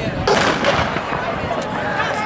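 A starter's pistol fires once, about a quarter second in, to start a 100-metre sprint, with spectators' voices around it.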